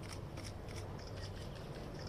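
Camera shutters clicking in quick, irregular succession, several clicks a second, over a steady low hum.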